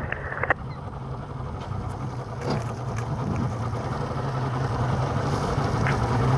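Rescue boat's motor running at low speed, a steady low hum that grows slowly louder during a slow turn while pushing a sailboat into its slip.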